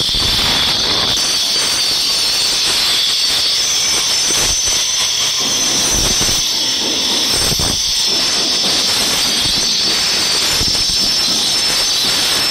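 Handheld angle grinder running continuously against the edge of a stone slab, a steady high-pitched grinding whine.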